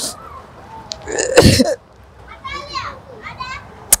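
A woman crying into a handkerchief: a loud sob about a second in, then high, wavering crying sounds, and a sharp click just before the end.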